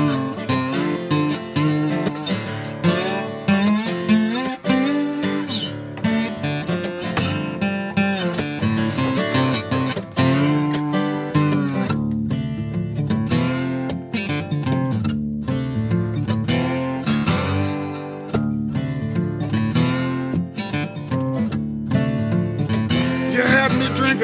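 Two acoustic guitars playing a blues instrumental break, one picking a lead line with bent notes over the other's accompaniment.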